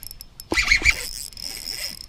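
Spinning fishing reel running while a hooked bass is fought, a high steady whirring that starts suddenly about half a second in, with a few light knocks from handling the rod.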